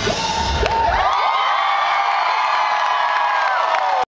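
Live rock band's song ends about a second in, and a club crowd goes on cheering, with many high whoops and screams.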